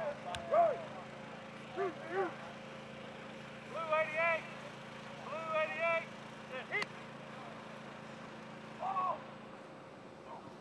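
Football players and coaches shouting short, high-pitched calls across a practice field, with two sharp knocks, over a steady low hum that stops near the end.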